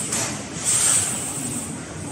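Metal balls rolling along the steel rails of a large kinetic ball-run sculpture: a hissing, rushing rumble that swells and fades in waves.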